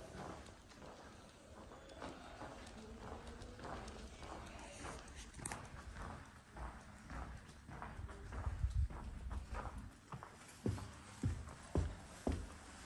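Footsteps walking on a hard floor, a steady series of steps that become heavier thuds about every half second near the end.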